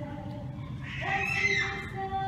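Church choir holding a sustained chant. About a second in, a brief high-pitched squeal with a gliding pitch cuts in above it and is the loudest sound.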